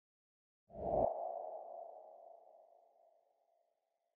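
Logo sound sting: a single deep hit with a ringing, ping-like tone starting just under a second in, then fading away over the next three seconds.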